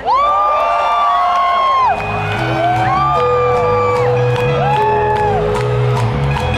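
Live rock band playing at a festival, heard from the crowd: long gliding notes that bend up, hold and fall away, then steady held tones over a pulsing bass, with the crowd whooping and cheering.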